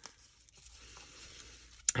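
Faint rustling of a wide satin ribbon being looped and tied by hand, with a brief sharp sound just before the end.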